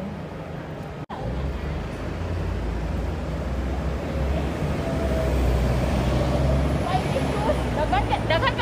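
Outdoor city street ambience: a steady low rumble with faint voices of passers-by, broken by a brief dropout about a second in.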